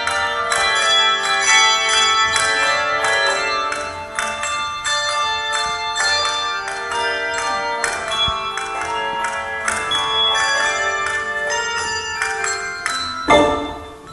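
Handbell choir ringing chords of many struck bells, notes starting several times a second and each ringing on. A sharp loud hit comes near the end.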